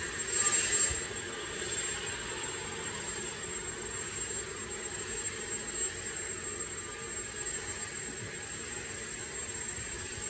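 Vacuum cleaner running steadily, a drone with a thin high whine over it, a little louder in the first second.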